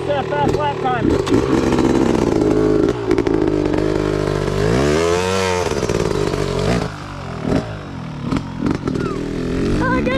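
Dirt bike engine idling, then revving up and back down about five seconds in as the bike pulls away. It grows quieter over the last few seconds as it rides off.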